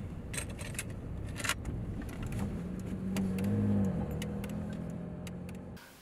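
Car engine running, heard from inside the cabin, its note swelling and dipping briefly past the middle, with a few sharp clicks in the first couple of seconds.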